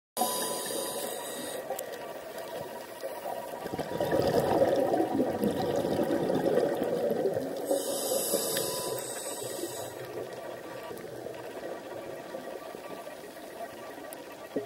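Muffled underwater water noise picked up by a camera in an underwater housing. It swells from about four seconds in, with brief high hissing near the start and again about eight seconds in.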